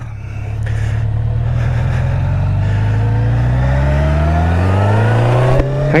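A 1987 Kawasaki ZL1000's inline four-cylinder engine accelerating away from a stop. Its pitch rises steadily for about five seconds, then breaks off near the end.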